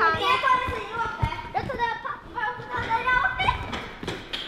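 Children talking and calling out as they play, their high-pitched voices following one another without pause.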